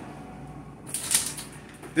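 A brief rustling clatter with a few clicks about a second in, as of something being picked up and handled.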